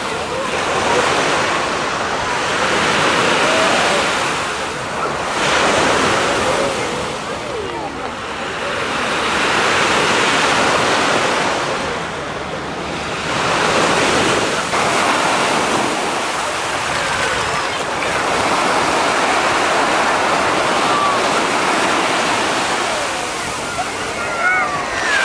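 Small waves breaking on a sandy beach, the surf swelling and easing every few seconds, with the voices of bathers in the background.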